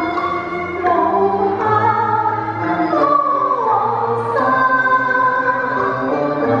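A woman singing a Cantonese love-song duet into a handheld microphone over instrumental accompaniment, holding long notes with a slow downward slide in pitch about halfway through.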